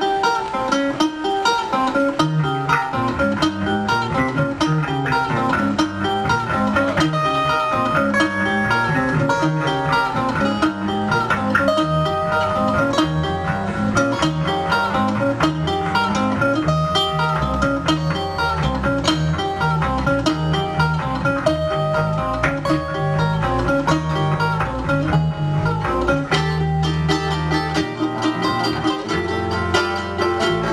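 A live acoustic band plays an instrumental passage: acoustic guitar and ukulele picking, with an electric bass line coming in about two seconds in.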